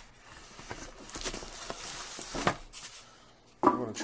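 Rustling and scraping of packing material in a cardboard box, as styrofoam corner pieces and a plastic bag are handled, with a few small clicks. It dies down about two and a half seconds in.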